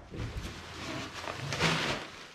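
Plastic air-pillow packing crinkling and rustling as it is pulled out of a large cardboard box, with the cardboard flaps scraping. The rustling is irregular and grows louder near the end.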